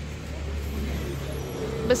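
Low, steady hum of road traffic, with a deeper engine note joining about halfway through.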